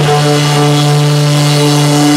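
Amplified electric guitar holding one loud, steady droning note that rings out without drums or singing.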